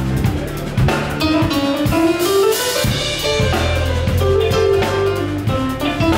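Live band playing: electric guitar and keyboard over a drum kit with a low bass line. Around two seconds in a cymbal wash rings out while the bass drops out, then the full groove comes back in about a second later.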